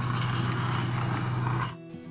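A steady low hum with a hiss over it, cutting off suddenly near the end, where soft guitar background music begins.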